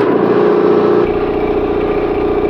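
Rolair 5520K17 electric air compressor running steadily, its pump working, with a fuller low pumping rumble from about a second in.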